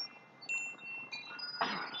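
Chimes ringing softly: a few high, clear tones sound one after another, each ringing on.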